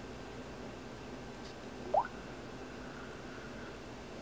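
A Samsung Galaxy Tab 3's touch-feedback sound as an on-screen button is tapped: a single short rising blip about halfway through, over faint room tone.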